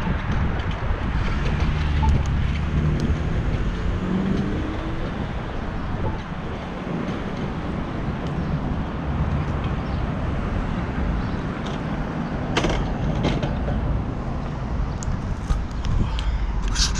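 Wind buffeting an action camera's microphone while riding a bicycle on city streets, with road traffic running underneath. A couple of sharp clicks come near the end.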